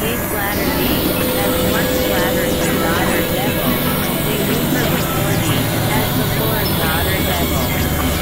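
Dense experimental electronic drone-and-noise music: a steady low drone with a few held tones, overlaid by many short warbling pitch glides.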